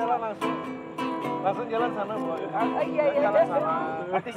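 Acoustic guitar being played, with several notes held and ringing together, while people talk over it.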